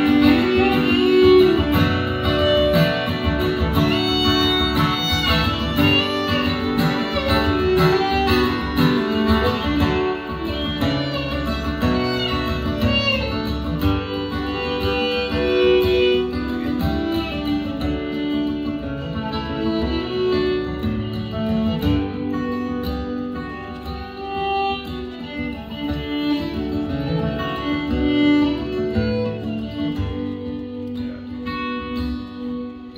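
Fiddle and acoustic guitar playing an instrumental passage together, the bowed fiddle carrying sustained notes over the guitar, with no singing.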